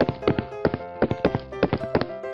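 Background music with steady held notes, under a quick, uneven run of sharp clip-clop knocks like cartoon hoof-step sound effects.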